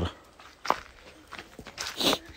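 Footsteps on dry dirt ground, scattered and irregular, with a sharp click about a third of the way in and a brief scuffing or brushing noise near the end.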